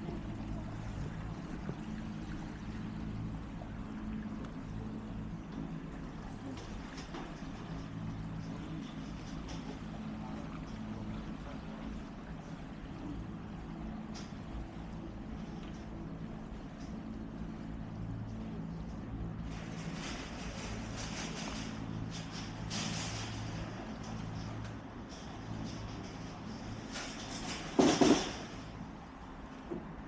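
A steady low motor hum. A few short rushes of noise come in the second half, and one loud burst comes about two seconds before the end.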